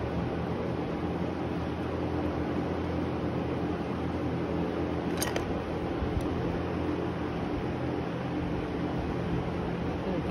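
Steady hum of a running fan, even in level throughout, with a single light click about five seconds in.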